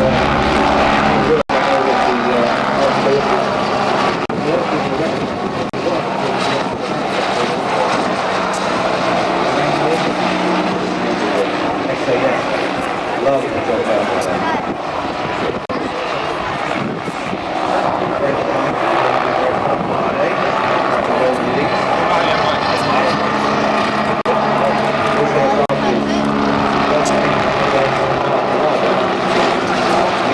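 Westland Wasp HAS1 helicopter flying a display, its turboshaft engine and rotor running steadily overhead. The sound cuts out for a moment about a second and a half in.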